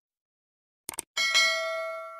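A quick double click sound effect about a second in, then a bright notification-bell chime rings and slowly fades.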